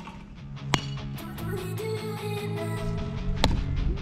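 Guitar-led background music, with two sharp cracks in it, one about a second in and one near the end.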